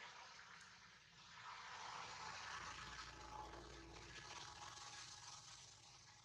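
Faint background hiss that swells for a few seconds in the middle and then fades.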